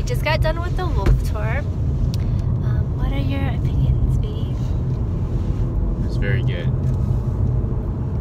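Road noise heard inside a moving car's cabin: a steady low rumble of engine and tyres.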